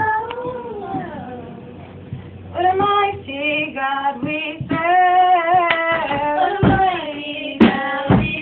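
Young female voices singing a gospel song, holding long notes that bend in pitch, dropping away about a second in and coming back in with new phrases a couple of seconds later. A single sharp click near the end.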